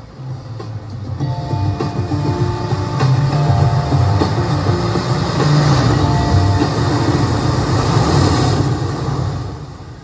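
Rumbling ocean-surf sound effect with a held synth chord above it, played over a hall's PA system; it swells over the first few seconds and fades away near the end.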